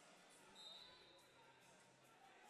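Near silence: faint arena room tone, with one brief, faint, high-pitched tone about half a second in.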